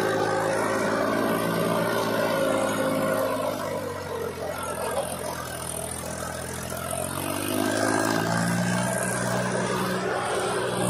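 Mahindra 265 DI tractor's three-cylinder diesel engine running under load, pulling a fully loaded trolley of soil. The revs drop about four seconds in and climb again near the end.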